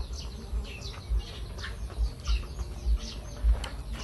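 Small birds chirping in a rapid series of short, falling notes, several a second. Low dull thuds sound underneath.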